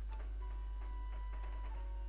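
Steady low electrical hum in the recording, with a few faint ticks over it and a faint thin tone in the middle.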